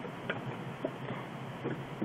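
A few light clicks of plastic construction-toy parts being handled, over a low steady hiss.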